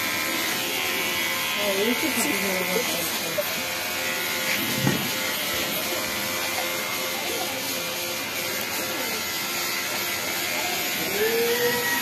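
Kemei cordless electric hair clipper running steadily with a buzz while it cuts a baby's hair.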